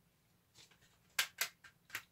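A few short, sharp plastic clicks about a second in: a CD jewel case being handled and snapped shut.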